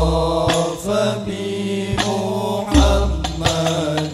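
Al-Banjari sholawat: a devotional Arabic song sung with long held notes over rebana frame drums. Deep drum strokes land near the start and about three seconds in.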